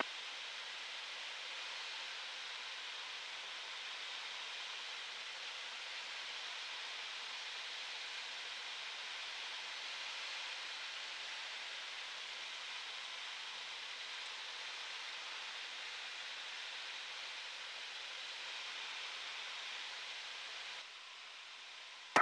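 Steady hiss from a light aircraft's headset intercom feed in flight, with no clear engine note. It drops slightly a second before the end.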